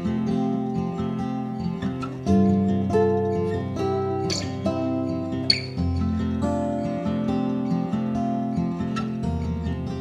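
Acoustic guitar music, strummed chords with ringing sustained notes.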